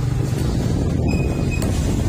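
Low, steady engine rumble of a motorcycle tricycle being ridden, with wind noise on the microphone.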